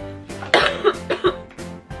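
A woman coughs in a short run of about three coughs, starting about half a second in; they are the loudest thing, over steady background music.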